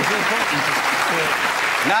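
Studio audience applauding and laughing. A man's voice starts speaking over it near the end.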